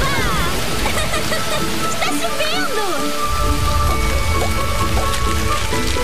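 Cartoon sound effect of rain pattering, over light background music with sliding, whistle-like effects. A deeper low rumble joins about halfway through.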